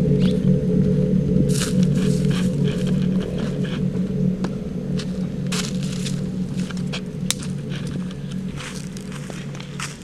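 A low, sustained music drone, dark and held on a few steady tones, fading slowly. Scattered crackles of footsteps on dry leaves and twigs sound over it.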